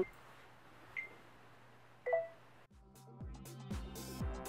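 Two short electronic phone beeps about a second apart, the second followed by a lower two-note chirp, then dance music with a heavy electronic kick drum starting near the end.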